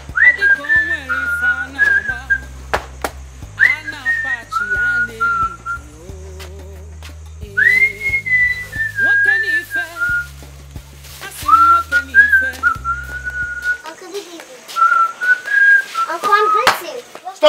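Soundtrack music: a whistled melody in slow phrases, each opening with an upward swoop, over sustained bass chords. The bass drops out about two seconds before the end while the whistling carries on alone.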